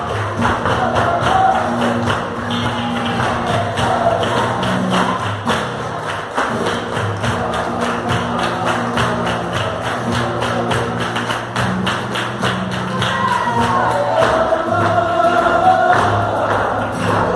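Live flamenco bulerías: guitars and singing over a fast, even beat of hand-clapping. The singing voices rise more clearly near the end.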